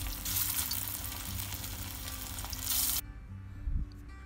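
Marinated chicken pieces deep-frying in hot oil in a kadai as more pieces are added, a steady sizzle that cuts off suddenly about three seconds in.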